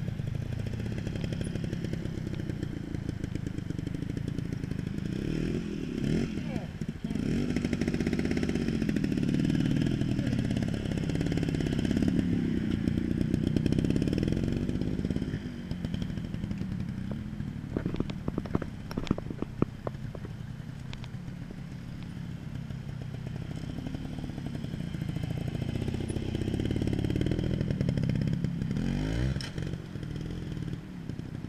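A trials motorcycle engine revving up and down in short blips as the bike is picked through rocks. A quick run of sharp knocks and clatter comes about two-thirds of the way through.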